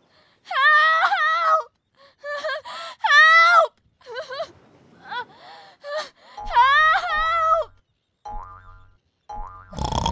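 High-pitched cartoon character voice making wordless wailing and groaning cries, in three main bursts that slide up and down in pitch.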